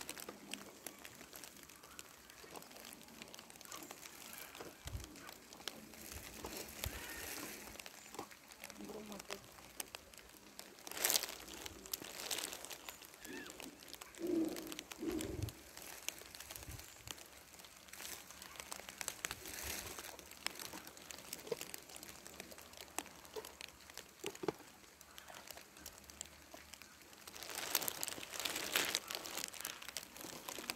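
Dry grass rustling and crackling under paws and footsteps as the dogs and walkers move through it, faint and intermittent.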